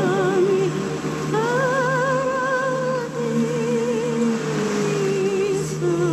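Film score: a solo voice singing long held notes with strong vibrato over a steady low drone, a new note swelling in about a second in and slowly sinking in pitch.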